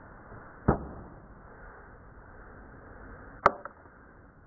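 Two sharp knocks about three seconds apart, the second louder and followed at once by a smaller tick, over a faint steady hiss.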